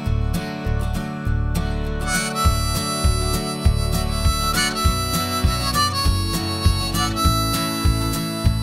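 Instrumental intro of a country-tinged pop-rock song: strummed acoustic guitar, with bass and drums coming in at the start and a held lead melody line entering about two seconds in.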